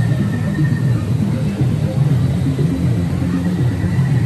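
Indistinct voices over a steady low rumble, with no clear words.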